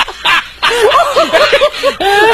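Hearty human laughter: a few short laughs, then from about half a second in a fast, continuous run of high-pitched laughing bursts.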